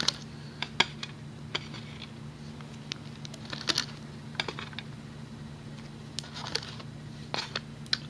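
Scattered light clicks and taps as small rubber loom bands are stretched and snapped onto the plastic pegs of a Rainbow Loom, at an irregular pace.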